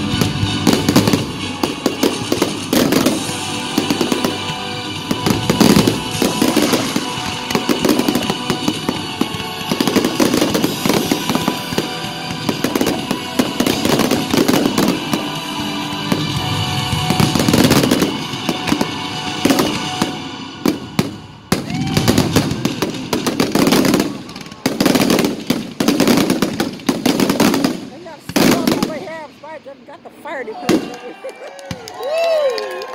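Fireworks display: rapid, overlapping aerial shell bursts and crackling with music playing underneath. After about twenty seconds the bursts come in separate clusters with quieter gaps between them.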